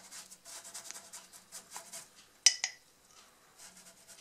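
A bristle brush scrubbing walnut water stain onto raw wood in quick, faint strokes, then about two and a half seconds in a sharp double clink as the brush knocks against the rim of the glass stain jar.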